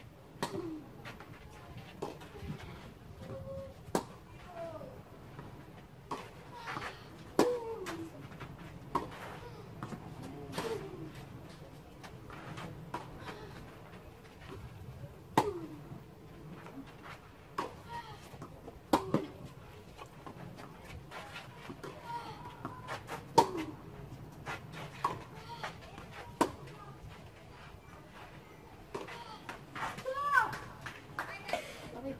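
Tennis racquets striking a ball in rallies on a clay court: sharp pops every one to three seconds throughout, with short falling vocal sounds after several of the hits.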